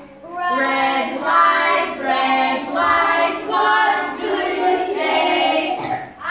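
A group of young children singing a traffic-lights song together, in a run of short sung phrases.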